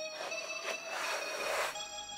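A sneaker insole being pulled out of the shoe: a rustling scrape that starts just after the beginning and stops shortly before the end. Background music with steady held tones plays under it.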